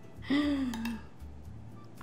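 A woman's short, breathy vocal sound of delight, falling in pitch, followed by a few faint clicks of a metal spoon against a ceramic plate as food is served onto it.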